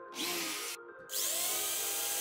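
Cordless drill motor whining up in a short burst, stopping, then starting again about a second in and settling into a steady run as the twist bit bores into a plywood board.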